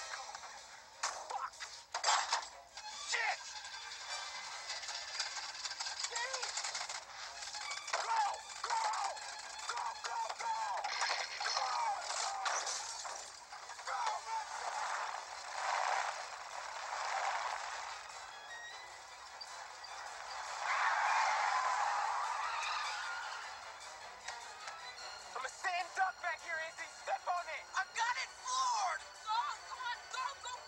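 Film soundtrack mix: a tense music score under voices, with a few sharp crashes or knocks near the start and again about eight seconds in.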